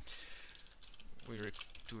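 Typing on a computer keyboard: a quick run of keystrokes in the first half second, then a few scattered key clicks.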